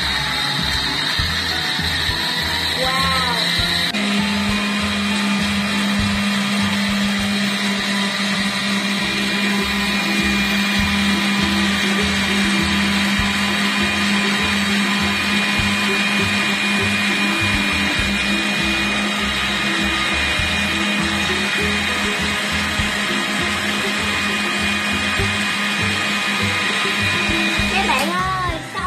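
Panasonic countertop blender running continuously as it blends passion fruit pulp and seeds. Its tone changes about four seconds in, settling into a steadier, lower hum.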